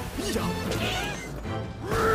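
Anime episode soundtrack: music with a few sudden hits and crashes, and some voices.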